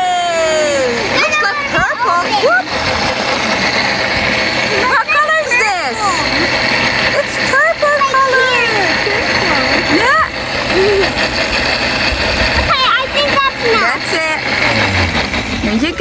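Countertop blender running steadily at full speed, blending berries, milk and water into a liquid purple mix.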